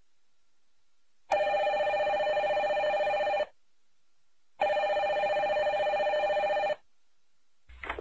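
Desk telephone ringing twice, each ring a steady electronic trill about two seconds long, with a silent pause between them.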